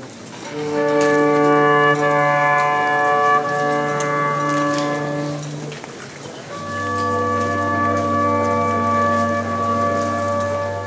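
Slow instrumental music of long held chords with steady, unwavering notes, the sound of an organ or reed-like wind instruments. Two chords of about five seconds each, with a short break between them about six seconds in.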